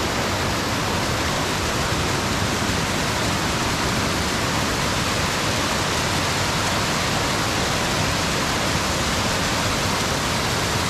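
Mountain creek cascading over rock ledges close by: a steady, unbroken rush of whitewater.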